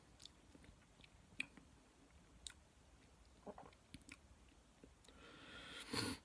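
Faint wet mouth sounds of a person tasting a mouthful of lager: scattered small clicks and smacks of the lips and tongue, then a breath that swells louder near the end.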